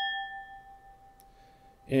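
Galway Irish crystal wine glass ringing after a flick of the finger: a clear, bell-like tone that fades away over about two seconds.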